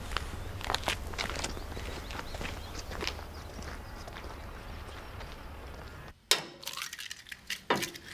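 Footsteps across a farmyard over a steady low outdoor background. The background cuts off about six seconds in, followed by a single sharp knock.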